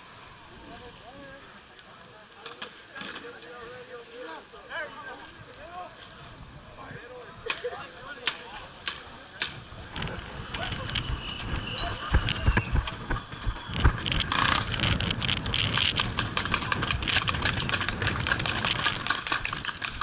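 Faint voices and a few scattered sharp pops, then from about ten seconds in a rising rush of gusty wind on the camera microphone, thick with rapid clicks and knocks that grow loudest near the end.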